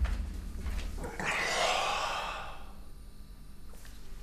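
A man's long, breathy sigh starting about a second in and fading away over a second and a half, after a low rumble in the first second.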